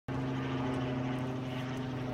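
A steady, unchanging mechanical hum of an engine or motor running, holding one low pitch throughout.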